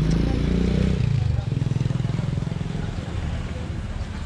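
A motorcycle engine running close by, loudest in the first second and a half, then fading.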